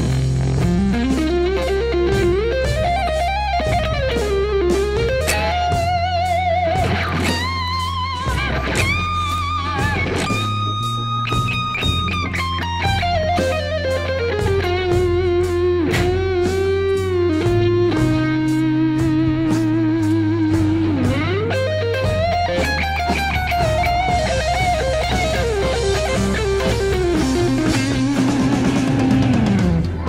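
Electric guitar through a Broadcast overdrive pedal into a Divided by 13 tube amp head, playing a slow, languid blues lead with string bends, wide vibrato on sustained notes and long held notes. It plays over a backing track with a bass line.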